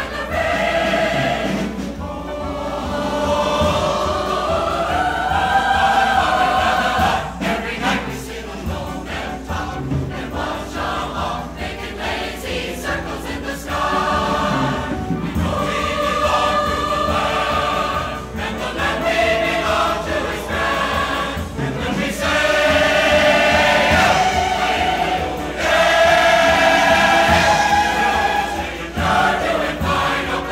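Large mixed choir singing with instrumental accompaniment, recorded live in concert.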